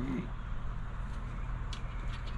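Faint scratching of a coin on a scratch-off lottery ticket, with a few short scrapes near the end, over a steady low hum.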